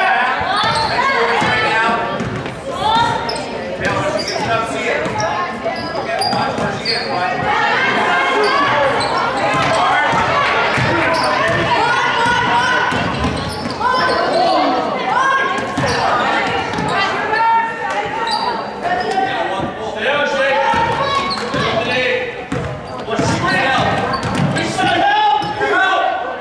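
Basketball game in a gymnasium: a ball bouncing on the hardwood court amid many overlapping voices of players, coaches and spectators calling out throughout.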